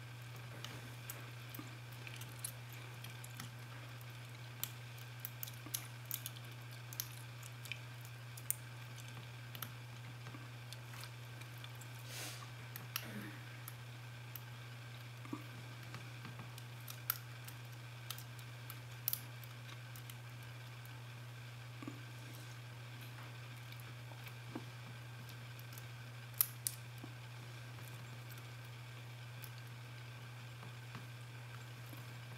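Faint, irregular small metallic clicks and ticks of a bogota pick working the pins of a TESA euro-profile pin-tumbler cylinder under tension, with the plug held in a false set. A steady low electrical hum runs underneath.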